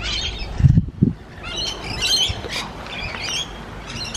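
Outdoor birds chirping and squawking in short repeated bursts of high, warbling calls. A couple of low thumps come about a second in.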